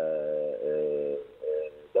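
A man's voice holding a long, level hesitation sound (a drawn-out 'uhh') for about a second, then a shorter one, heard through a telephone line.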